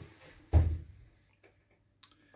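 A single dull, heavy thump about half a second in, dying away quickly, in a small enclosed space.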